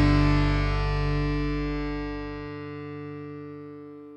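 Final distorted electric guitar chord of a rock song, held and ringing out while fading away. The deepest bass note drops out a little past halfway through.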